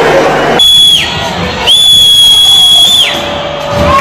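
Referee's whistle blown twice over the stadium crowd, a short blast and then a longer one, each sliding down in pitch as it ends.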